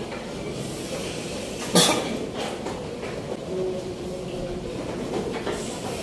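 Background noise of a busy chess tournament hall, with faint voices murmuring and one sharp click about two seconds in.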